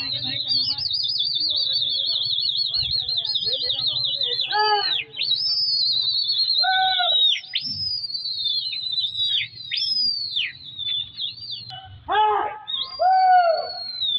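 Men whistling high and hard to a flying flock of pigeons: a long warbling whistle trill over the first few seconds, then a run of short whistles that fall in pitch, with a few high shouts between them.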